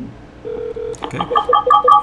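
Telephone call tones from a softphone: two short low beeps, then a rapid electronic ring alternating between a low and a higher tone as the routed call rings through to the agent.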